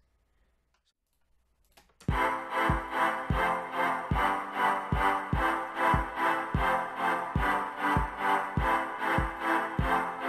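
Near silence for about two seconds, then an FL Studio beat starts playing: a simple synth chord progression over a programmed kick drum, clap and hi-hat pattern at a steady tempo.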